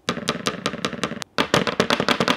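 An iPhone lying on its back on a desk rocks on its protruding rear camera bump, clacking against the desktop about ten times a second as a finger presses its corner, with a short break just over a second in. The wobble comes from camera lenses that stick out of the phone's body.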